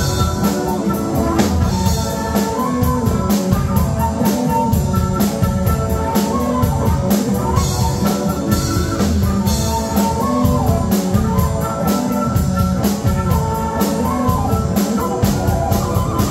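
Live band playing an instrumental passage: a flute melody over electric guitar and a drum kit keeping a steady beat.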